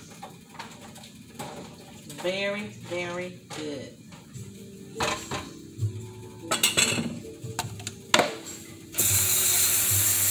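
Wooden spoon stirring and knocking against a metal pot of gumbo, a few clinks and knocks, the loudest as the spoon is laid down on the counter. Just before the end a steady loud hiss starts abruptly.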